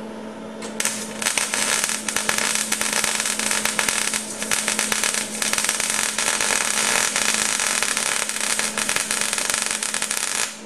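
Electric arc welding on steel: a steady, loud crackle that starts about a second in and stops right at the end, over a steady hum.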